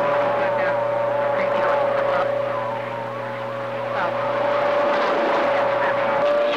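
CB radio loudspeaker receiving skip: a steady whistle tone over static hiss and hum, with faint warbling, garbled voices underneath.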